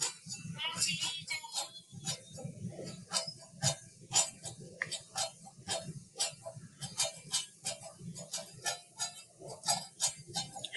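Hula brain-break song playing quietly: a run of sharp, clicking percussion strokes, several a second, with a faint voice in places.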